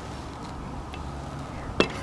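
Low steady background noise with a faint tick about a second in and one sharp click near the end.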